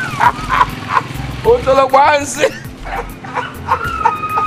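A man's voice in short, loud exclamations and shouts over background music with a low pulsing beat.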